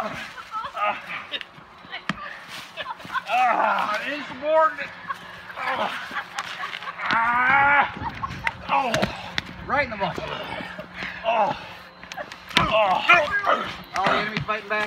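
Voices shouting and yelling in short, loud calls, some rising in pitch, with a couple of sharp knocks.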